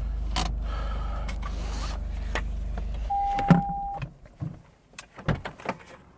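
Toyota GR Corolla's turbo three-cylinder idling as a steady low hum that cuts out about three seconds in. A single held chime of about a second follows, then a few light clicks and knocks from inside the car.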